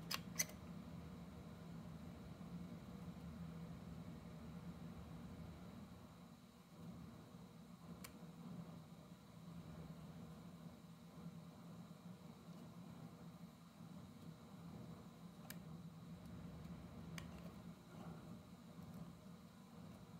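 Near silence: a faint steady low hum of room tone, broken by a few faint ticks, one near the start and others about eight, fifteen and seventeen seconds in.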